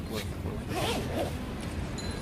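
A zipper pulled in two short rasping strokes, the second a little longer, over faint talk and a low steady background rumble.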